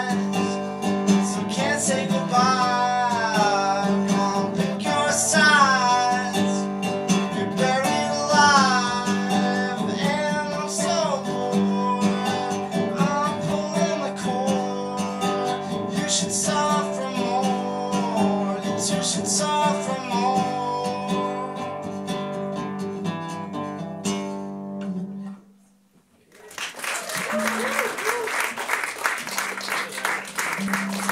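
A man singing while strumming a nylon-string classical guitar. The song ends about 25 seconds in with a brief hush, then a stretch of applause begins.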